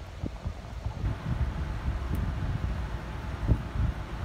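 Handling noise on the recording device's microphone: a low, uneven rumble with a couple of soft bumps as the device is moved and the palette is handled.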